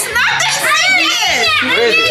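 Children shrieking and shouting excitedly in a play-fight, with high-pitched cries that rise and fall.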